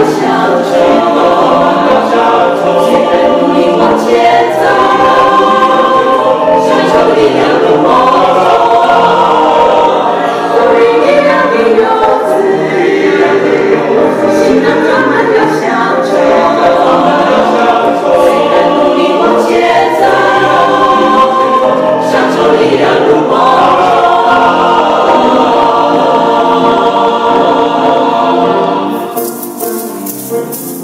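Mixed-voice choir of men and women singing a Mandarin song together in parts, at a full, steady level. Near the end the singing stops and applause begins.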